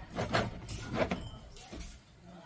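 Glass soda bottles knocking and clinking against each other a few times as one is lifted and handled among others in a basket.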